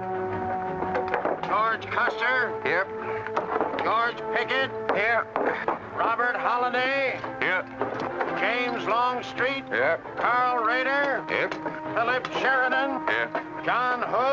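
Film score with steady held notes, under a crowd of men's voices talking over one another indistinctly.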